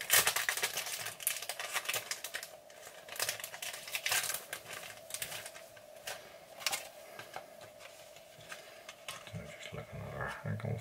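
Crinkling, rustling and small clicks of fly-tying materials being handled at the vise. They are dense for the first few seconds, then come in scattered bursts over a faint steady hum.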